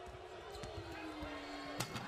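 Basketball game in an arena: a ball dribbling with faint knocks under a long steady tone that slowly drops in pitch, then a sharp slam near the end as a player goes up at the rim.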